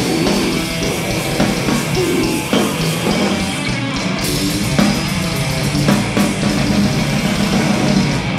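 Death metal band playing live: distorted electric guitar and bass guitar over dense, fast drumming, loud and continuous.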